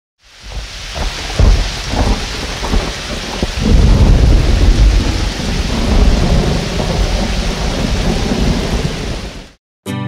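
Heavy steady rain with rolling thunder rumbles, swelling loudest about a second and a half in and again around four seconds in. It fades in at the start and cuts off about half a second before the end.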